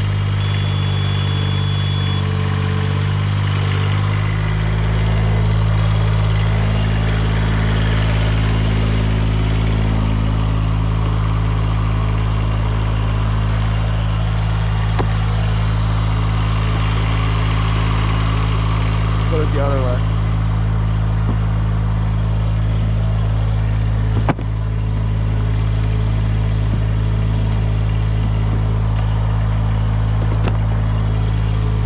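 Engine of an 83HD+ Arbor Pro spider lift running steadily, its note getting fuller and a little louder about four seconds in. A single sharp knock comes near the end.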